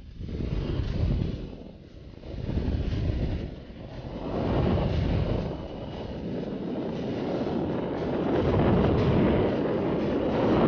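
Rushing wind of skydiving freefall buffeting a body-mounted camera's microphone, surging and dipping in the first few seconds after the exit from the plane, then steadier and louder as the fall speeds up.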